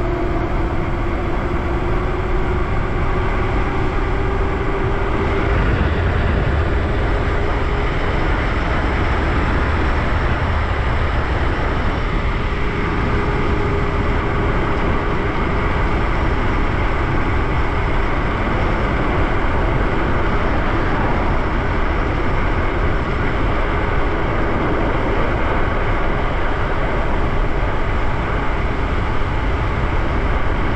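Heavy wind rush on the microphone and tyre noise from a Lyric Graffiti electric moped-style bike at full throttle, settling near 34 mph. The electric motor's whine rises in pitch over the first couple of seconds as the bike accelerates, then holds steady.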